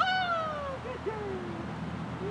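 A Rottweiler puppy whining: a high, sudden note that slides down in pitch over nearly a second, followed by a second, shorter falling whine.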